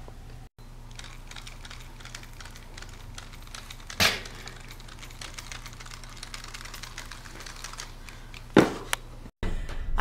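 Wooden popsicle-stick puppets handled and moved by hand: light, irregular clicking and tapping of the sticks, with a sharper knock about four seconds in and another near the end, over a low steady hum.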